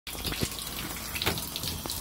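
Water running from a bathtub spout into the tub, a steady rush with a few short splashes or knocks.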